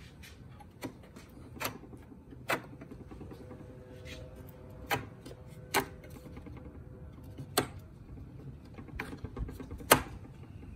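Metal brackets and small hardware being handled on a plywood panel: about eight sharp clicks and taps at irregular intervals, the loudest near the end.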